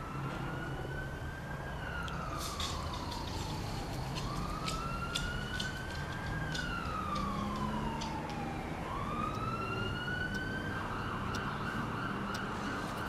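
A siren wailing, its pitch rising and falling slowly in cycles of about four and a half seconds, switching to a fast warble near the end. Scattered sharp clicks sound over it.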